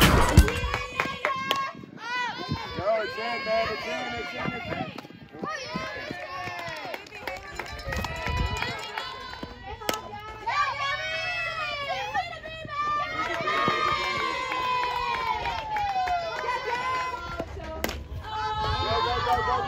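Many teenage girls' voices calling and cheering at once, overlapping throughout, with a single sharp knock about ten seconds in.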